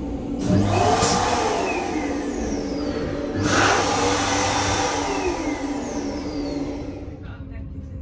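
Hand dryer built into a train toilet's washbasin unit blowing, set off by a hand, in two runs starting about half a second in and again about three and a half seconds in, dying away near the end.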